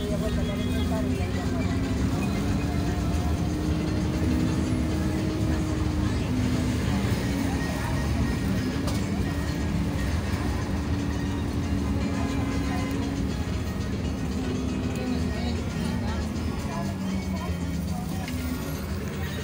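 Steady low rumble of a city bus's engine and road noise, heard from inside the moving bus, with a drawn-out droning tone that shifts slowly in pitch. Music and talk sound faintly underneath.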